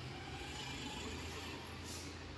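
Steady low background rumble and hiss, with a brief faint rustle near the end.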